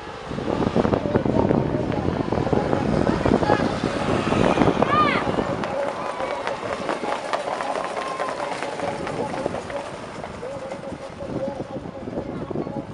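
A field of harness-racing trotters pulling sulkies past on a dirt track, a dense clatter of hoofbeats and wheels, loudest in the first half and fading as they move away. A voice runs beneath it.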